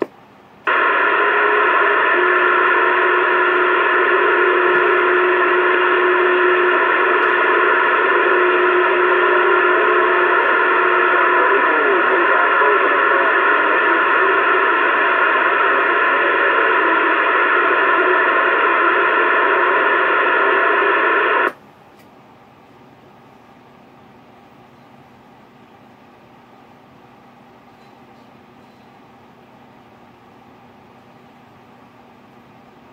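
Uniden CB radio's speaker giving out a loud, even rush of static from an incoming signal on the channel, with a faint steady tone in it for several seconds. It cuts off suddenly after about twenty seconds, leaving only faint receiver hiss.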